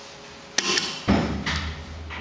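An elevator's up call button being pressed: a sharp click about half a second in, then a duller, heavier knock and a low hum that carries on.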